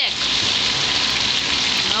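Meatballs frying in shallow oil in a skillet: a steady sizzle.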